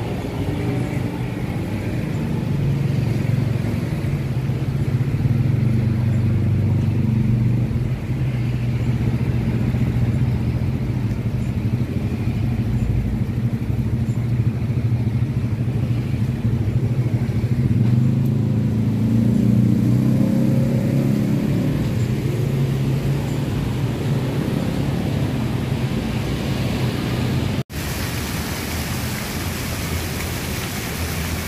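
A motor vehicle's engine running with a steady low hum that rises in pitch for a few seconds about two-thirds of the way in. The sound drops out for an instant near the end, then gives way to a steady hiss.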